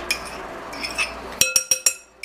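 A metal utensil scraping soft butter out of a small glass dish, then about four quick, ringing clinks of metal against the glass near the end as the butter is knocked loose.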